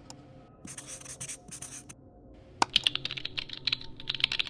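A marker scratching across a surface in a few quick strokes, then a sharp click and rapid typing on a computer keyboard from about two-thirds of the way in.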